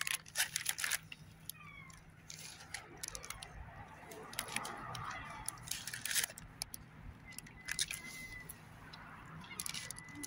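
Scattered clicks and rustles of close handling over faint outdoor background noise, with two brief thin tones near the end.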